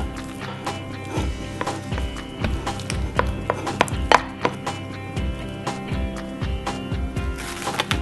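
A rice scoop stirring and slapping hot, sticky, half-cooked glutinous rice dough (mugwort injeolmi dough) in a ceramic bowl, giving irregular knocks and wet slaps, under background music.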